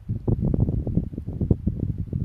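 Wind buffeting the microphone outdoors: an irregular low rumble with rustling, louder through the middle.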